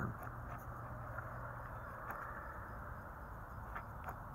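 Quiet, steady outdoor background noise with a faint low hum in the first half and a few faint clicks.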